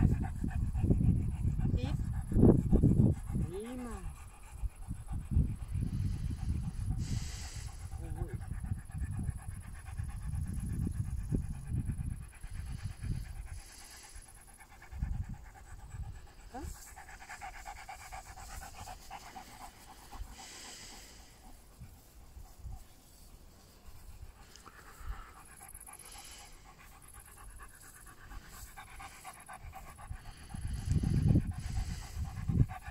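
A dog panting, with gusts of wind buffeting the microphone through the first half.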